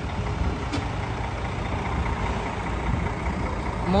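Engine of a city bus running close by, a steady low rumble over general street traffic noise.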